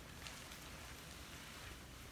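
Faint patter and rustling of turkeys pecking grain and stepping in loose straw, with a few light ticks.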